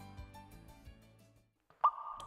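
Background music fading out, then, after a short silence near the end, a single sharp water-drop plop sound effect with a brief ringing tone.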